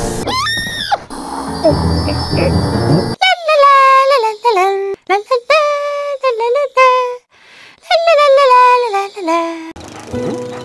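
A brief rising whistle-like glide over background music, then a very high-pitched, squeaky cartoon voice speaking in short phrases for about six seconds, too squeaky for the words to be made out.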